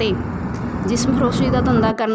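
A woman's voice-over speaking, over a low steady background rumble that drops away at the very end.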